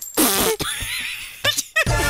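A comic fart-like noise with a wobbling pitch, lasting about a second.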